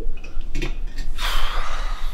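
A person's loud, breathy exhale like a sigh, lasting under a second, starting a little past a second in.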